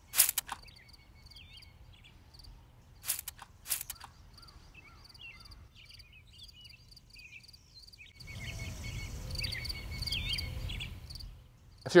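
A few short hissing squirts from a hand trigger-spray bottle of lawn weedkiller, one near the start and two about three to four seconds in, over birds chirping. From about eight seconds a gusty wind rumble on the microphone rises for a few seconds, then drops away.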